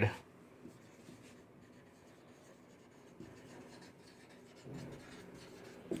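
Marker pen writing on a whiteboard: faint strokes, mostly from about three seconds in.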